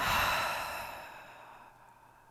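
A woman's long sigh, a breathy exhale that starts sharply and fades away over about a second and a half.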